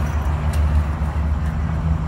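Semi-truck's diesel engine idling, a steady low rumble.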